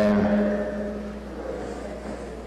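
A man's voice over a PA microphone holds out the end of a called name for about a second, then fades into quiet room noise over a steady low hum.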